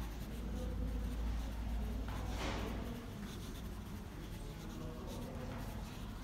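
Hand writing on a textbook page: soft scratching strokes on paper, the longest about two seconds in.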